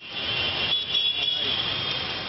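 Street sound in heavy rain: a steady hiss of rain mixed with road traffic, with a thin high-pitched tone running through it.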